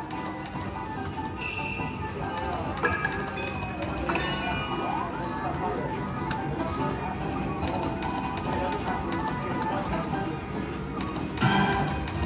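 Video slot machine's electronic game music and chimes as its reels spin and stop over several rounds, with scattered short clicks, against casino background noise.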